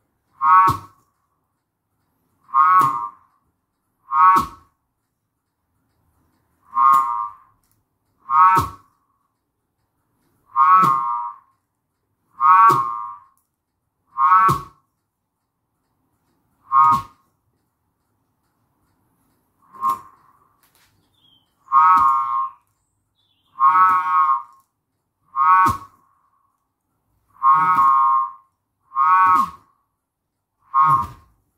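A 3D-printed button whirligig whistling as it spins on a string pulled in and out, now spinning fast enough to sound. Each pull brings a short whistle that rises and falls in pitch, about every one to two seconds, with a brief pause about two-thirds of the way through.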